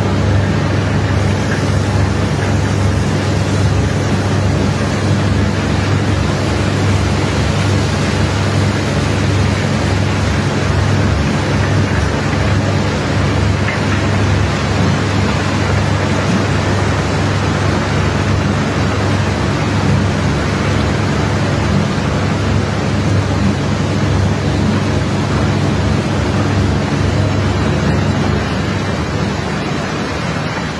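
A steady, loud engine or pump drone with a constant hiss of high-pressure water jets spraying across a steel barge deck to wash off crushed iron ore. The level eases slightly near the end.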